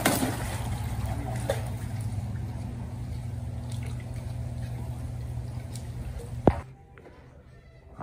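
Pond water splashing and sloshing as a koi is netted and lifted into a plastic tub, over a steady low hum. A sharp knock comes about six and a half seconds in, after which the sound drops much quieter.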